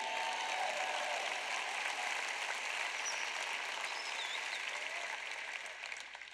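Large arena audience applauding, with a few voices calling out, dying away near the end.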